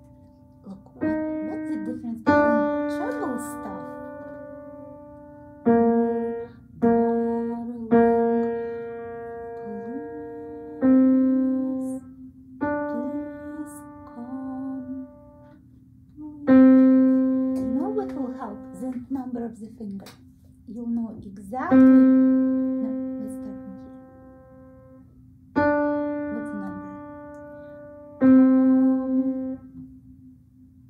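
Piano played slowly by a beginner: about eleven single notes and simple pairs, each struck and left to ring and fade, with pauses between them.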